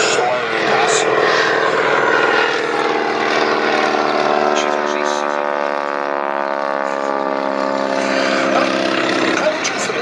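Boeing Stearman biplane's nine-cylinder Pratt & Whitney R-985 radial engine and propeller droning loudly on a close pass. A strong, steady engine hum sets in about three seconds in and holds until near the end.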